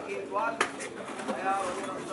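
Indistinct voices talking, with birds calling, and a short click a little over half a second in.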